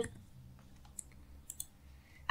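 A few faint clicks of computer keys, one about a second in and a couple more around one and a half seconds.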